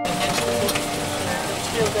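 Engine of a 1963 Austin fire engine running, heard from inside the cab as a steady rumble with a few sharp clicks.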